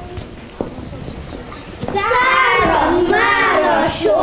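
A group of young children singing together, starting about halfway through; before that, a few light knocks and shuffles.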